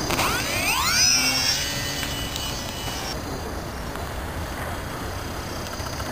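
Small electric RC plane's brushless motor and propeller throttling up at launch, the whine rising steeply in pitch over the first second and a half. It then holds a steady high whine, which drops away about halfway through as the plane flies off.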